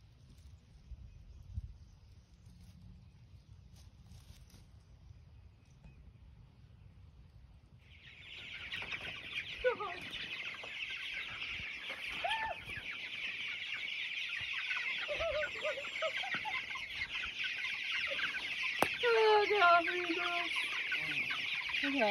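Quiet for the first several seconds. Then, about eight seconds in, a large flock of young chickens starts up in a dense, continuous high peeping, with occasional lower calls, and grows louder toward the end.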